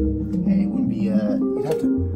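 Synthesizer sequence playing: a quick run of short pitched notes stepping up and down over longer, lower bass notes.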